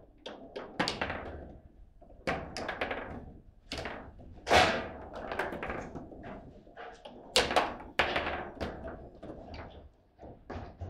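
Foosball table in play: an irregular string of sharp knocks and clacks as the ball is struck and the rods are worked, with the loudest hits about four and a half and seven and a half seconds in.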